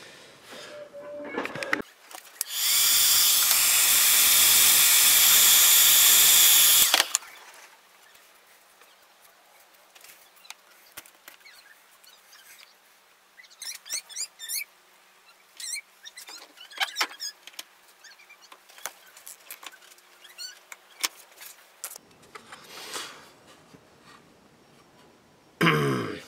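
A power tool runs steadily for about four and a half seconds, then stops. After that come small clicks, taps and rustles of hard plastic pieces being handled, with two short louder noises near the end.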